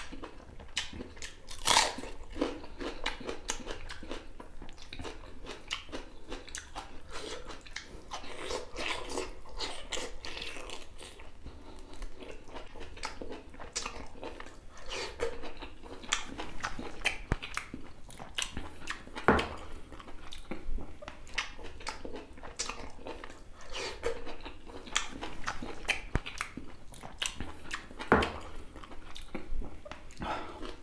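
Close-miked mukbang eating: wet chewing, lip smacks and crunches as a person eats rice, boiled beef and mustard leaf by hand. A few louder, sharper crunches stand out, about two seconds in, near the middle and near the end.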